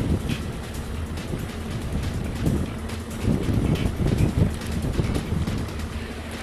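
Outboard motor running steadily as the boat trolls, with wind buffeting the microphone in gusts through the middle.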